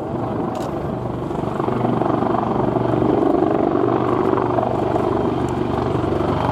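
Two Westland Wildcat helicopters flying in close formation, their rotors chopping fast and evenly over the sound of the twin turbine engines. The sound grows louder over the first couple of seconds as the pair approaches, then holds steady.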